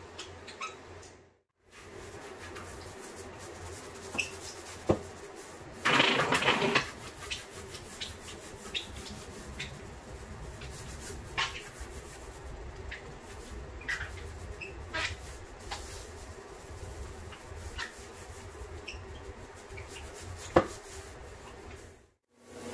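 A hand pump-up sprayer hissing briefly about six seconds in, amid scattered short squeaks and clicks from work on a wet hardwood floor, over a low steady hum.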